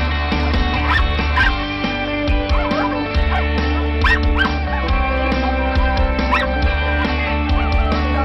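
Background music playing over a small dog's short, high yips and whines, which come several times and bend up and down in pitch.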